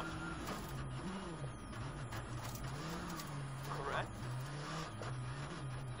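Rally car engine heard from inside the cockpit, its note rising and falling over and over as the driver works the throttle, over a steady rush of tyres on a gravel road.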